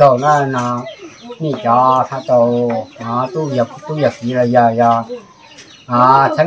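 An older man's voice chanting in drawn-out phrases held on a steady pitch, with short breaks between phrases and a brief pause near the end.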